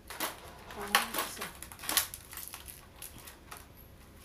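Small metal hardware being handled: a quick series of sharp metallic clicks and clatters, loudest about one and two seconds in, then fewer, lighter clicks.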